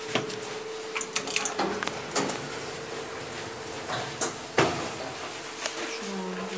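Elevator car of a 2014 Flügel & Klement traction elevator: a steady hum under a run of short clicks and knocks from the door and car mechanism. The loudest knock comes about four and a half seconds in.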